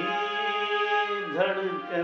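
Casio electronic keyboard playing a slow melody of held notes, with a man singing along; the voice slides between pitches about one and a half seconds in.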